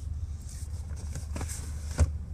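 A steady low rumble with faint rustling and a few light clicks in the second half.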